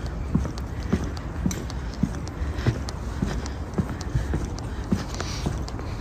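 Footsteps on a paved path, about two a second, over a low steady rumble.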